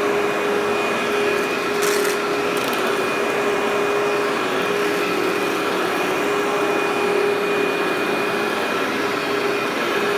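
Workhorse commercial upright vacuum running steadily as it is pushed over low-pile loop carpet. Its motor gives a constant whine, with a brief crackle about two seconds in.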